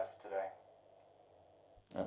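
A man's voice trails off, then quiet room tone, broken near the end by a single short sharp click just before speech resumes.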